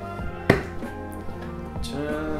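A single sharp plastic click about half a second in, as the latch of a hard plastic gimbal carrying case snaps open, over steady background music.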